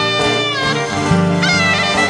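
Greek folk music: a clarinet plays a bending, heavily ornamented melody over steady string accompaniment.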